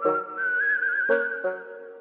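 A whistled tune with a wavering pitch, over plucked string notes that ring out and fade, one at the start and another about a second in.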